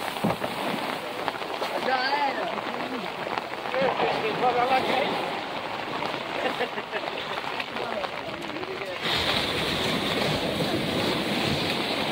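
Surf washing up the beach and swirling around the boat in the shallows, a steady wash of water, with fishermen's voices faintly under it. About nine seconds in the rushing noise grows louder and brighter.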